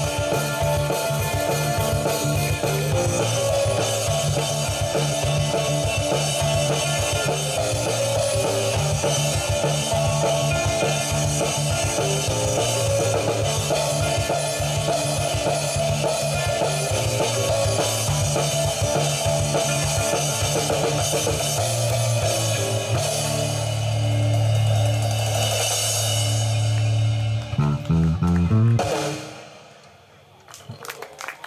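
Live rock band of electric guitar, electric bass and drum kit playing an instrumental passage with no vocals. It settles into a long held chord, hits a few last accents and stops shortly before the end: the close of a song.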